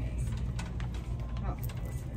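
Steady low rumble of shop background, with a few light clicks and knocks from a hand-held phone camera being moved and handled.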